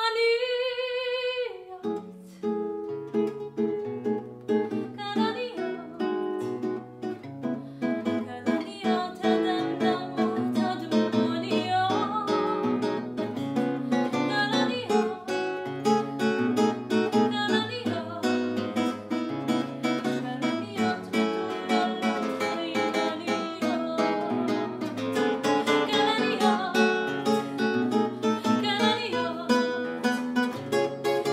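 A soprano holds a sung note with vibrato that ends about two seconds in. Then a nylon-string classical guitar plays solo: plucked melody notes over a moving bass line.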